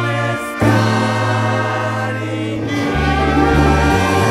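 Latin dance band playing, with trumpets, congas and maracas under group singing. There is a brief drop about half a second in before the full band comes back.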